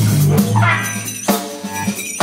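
Rock band playing live: electric guitar and drum kit, with a held low note and a rising slide in pitch about halfway through.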